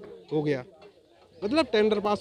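A man's voice in two short utterances, one near the start and one from about one and a half seconds in, with a quieter lull of about a second between them.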